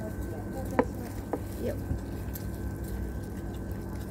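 Room tone with a steady low hum and a faint high-pitched whine. Two sharp clicks come about a second in, the first the loudest sound.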